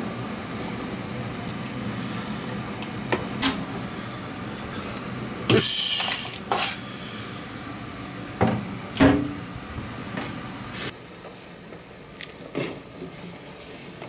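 Cooking utensils knocking and scraping against metal pots on a stove: a string of separate clatters, the loudest about six seconds in, over a steady hiss that drops away about eleven seconds in.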